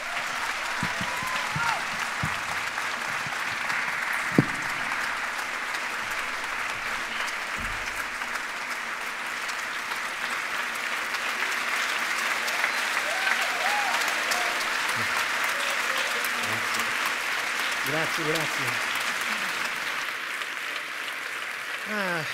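A large theatre audience applauding warmly and steadily for a long stretch, greeting a speaker as he takes the stage. One sharp knock sounds about four seconds in.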